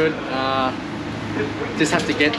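A man talking, with a drawn-out voiced sound early on, over a steady low background hum.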